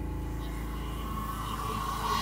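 Electronic music: a held synth chord sustained over a steady low bass drone, with a noisy riser swelling near the end.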